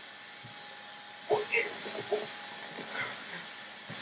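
Low steady hiss, then a sudden loud knock about a second in, with a short burst of indistinct voice right after it.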